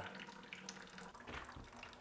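Faint trickle of water falling from a ceiling leak into a plastic bucket. The water is coming through from a leaking tiled shower on the floor above.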